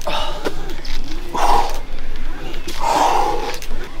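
A man's two strained, breathy grunts of effort as he pulls a rope-and-weight rig, one about a second in and a longer one near three seconds.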